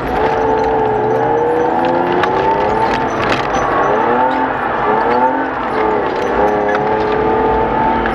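Race car's engine heard from inside the cabin, its revs rising and falling as it is driven slowly through corners, with scattered sharp clicks.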